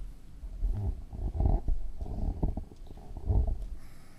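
Camera handling noise: low muffled rumbles and a few soft thumps as the camera is moved, with no clear voice.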